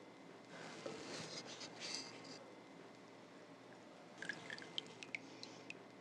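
Faint wet handling sounds of a freshly roasted pork shoulder being lifted in its pan juices: a soft squelching hiss for a couple of seconds, then a few small drips and clicks near the end.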